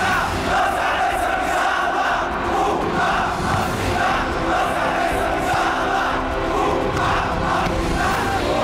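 A large football crowd chanting together, the mass of voices rising and falling in a steady repeated rhythm of about one phrase a second.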